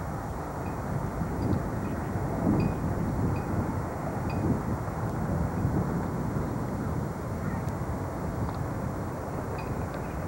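Steady outdoor rumble of wind on the camcorder microphone, mixed with distant traffic.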